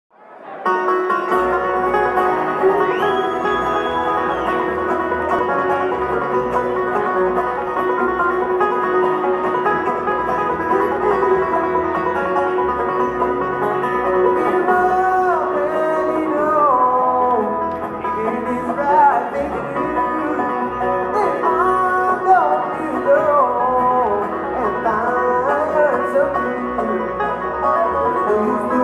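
Live bluegrass band of upright bass, fiddle, dobro, banjo and acoustic guitar playing. The music fades in at the very start. Long held notes fill the first half, and sliding, bending notes come through over the second half.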